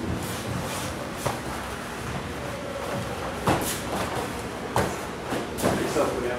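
Aikido practice on padded mats: a few short knocks and thuds of bare feet stepping and uniforms moving, mostly in the second half, over a steady hiss of room noise.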